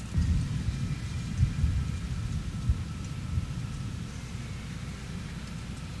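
Wind buffeting an outdoor camera microphone: a low, uneven rumble that gusts in the first three seconds, then settles.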